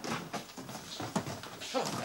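Cardboard shoe boxes being pulled out and pushed about on wooden shelves in a hurry: a quick run of knocks and scuffs, with a few short vocal sounds mixed in.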